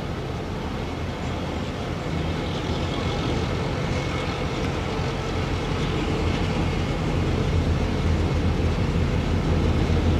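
Victorian Railways T-class diesel-electric locomotive T411's engine running with a steady low rumble as it approaches slowly, growing gradually louder.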